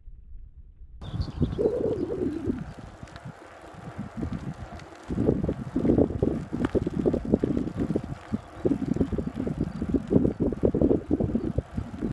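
Wind buffeting the microphone of a camera mounted low on a moving touring bicycle, in loud irregular gusts. It starts about a second in, eases off briefly around the middle and picks up again.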